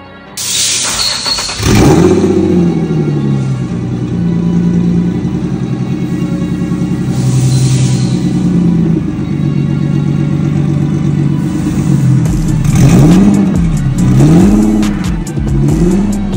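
Single-turbo Nissan 350Z's 3.5-litre V6 being revved with the car standing still: revs held at several steady pitches, then several quick blips rising and falling near the end.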